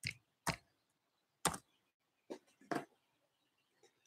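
Five faint, sharp clicks at irregular intervals, two close together near the start and the rest spread over the next two and a half seconds.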